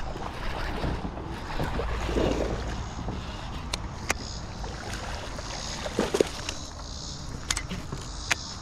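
Wind on the microphone over water sloshing and splashing beside a kayak as a hooked bass is brought to the boat, with a few sharp knocks and clicks of rod and gear handling.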